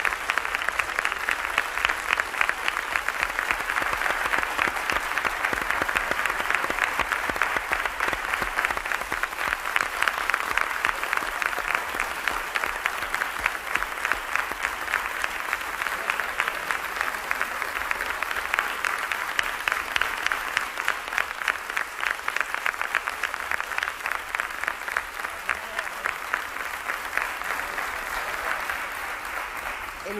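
Audience applauding: a dense, steady clatter of many hands clapping, easing off slightly near the end.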